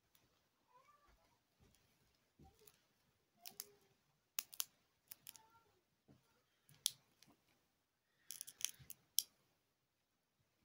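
Sharp, crisp clicks and snaps at irregular intervals: two close together about four and a half seconds in, one near seven seconds, and a quick cluster near the end.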